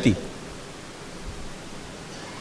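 A pause in a man's speech. Only a steady background hiss is heard, with the last syllable of his sentence fading out at the very start.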